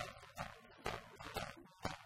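Two ukuleles strummed together in a steady rhythm, about two sharp, percussive strums a second.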